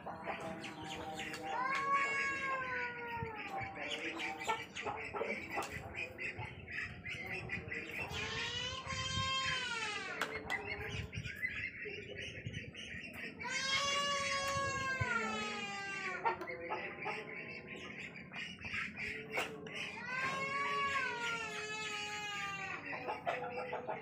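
An animal calling four times, each call about two seconds long, rising and then falling in pitch, roughly six seconds apart, over scattered small clicks.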